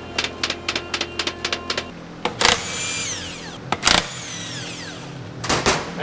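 Ratchet wrench clicking rapidly, about six clicks a second, while loosening turbocharger parts under the hood. Then three loud sudden bursts, the first two trailing off in high falling whistles.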